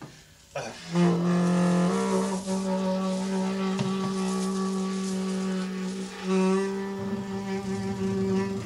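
Free-improvised duet of alto saxophone and acoustic double bass. The music comes in suddenly about half a second in with a falling glide, then settles into long held low notes, with a new held note near the end.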